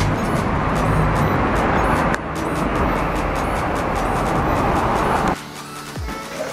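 Loud rumbling noise of a crowded public-transport vehicle and the street outside, under background music with a steady beat. The vehicle noise cuts off suddenly about five seconds in, leaving the music.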